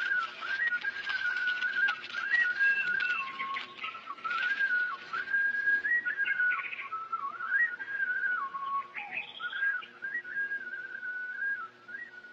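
A slow melody whistled on a single clear tone, stepping up and down between notes with a few short slides between them.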